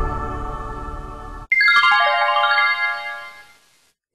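Electronic transition music fading, then cut off about a second and a half in by a bright chime. The chime is a quick run of notes stepping down in pitch that rings on and fades away.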